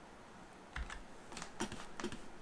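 A few keystrokes on a computer keyboard: a soft low thump about a third of the way in, followed by several light clicks.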